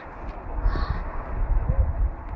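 A single short, harsh animal call about three-quarters of a second in, over a steady low rumble.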